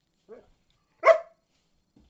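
A dog barks once, loud and short, about a second in, after a faint brief vocal sound from the dog just before.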